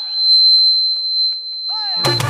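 A steady high-pitched whistling tone from the stage PA system, typical of microphone feedback ringing while the band pauses. Drum hits come in near the end as the music starts again, and the tone then stops.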